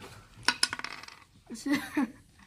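A die thrown onto a wooden Ludo board, clattering in a quick run of clicks about half a second in.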